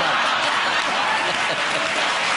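Studio audience applauding steadily, with a voice faintly over the clapping.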